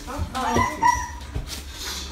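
A pet beagle whimpering and yipping excitedly, mixed with people's voices and a few low thumps.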